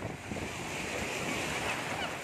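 Shallow surf washing up the beach: a steady rush of breaking, foaming waves.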